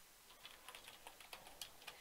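Faint computer keyboard typing: a run of quiet, irregular key clicks.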